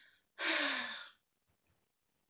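A woman's sigh: a faint breath in at the start, then about half a second in a long, breathy out-breath with a voiced tone that falls in pitch as it fades.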